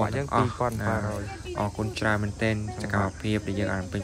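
Speech: a voice talking continuously, with no other distinct sound standing out.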